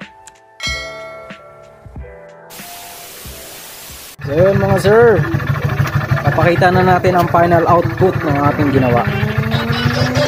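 Music: a short passage of held tones, then a burst of hiss, then a louder song with a singing voice over a steady beat from about four seconds in.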